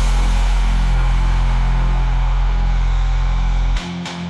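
Electronic dubstep music: a loud, held bass chord with a bright wash above it, which cuts off near the end and gives way to lighter, choppier notes.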